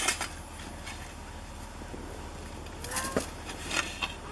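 A snow shovel digging into a packed snow pile: a sharp crunch at the start and a few more scrapes and knocks near the end. A short, high gliding call is heard about three seconds in.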